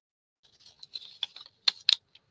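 Paper rustling and crackling as handmade paper booklets are handled and their pages flipped, starting about half a second in, with a few sharp clicks near the end.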